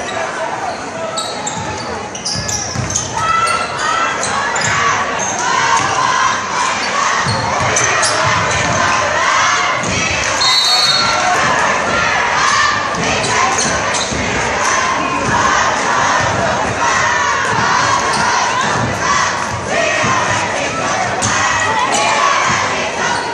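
Gym crowd at a basketball game, spectators shouting and cheering over the ball being dribbled on the hardwood court, with the crowd getting louder about three seconds in.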